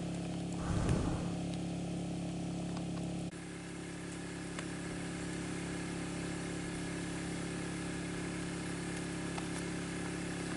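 A small engine running steadily at a constant speed, giving an even drone. A brief louder noise comes about a second in, and the drone drops slightly in level a little over three seconds in.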